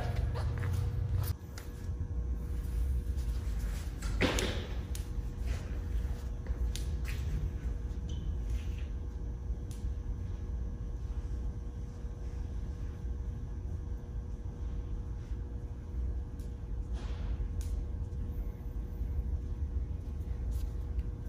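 Room tone of a large shop: a steady low hum with a faint steady tone above it. A few faint short knocks, the clearest about four seconds in.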